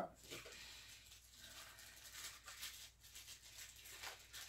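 Faint crinkling and rustling of plastic packaging, with many small crackles, as a small statue accessory is unwrapped by hand.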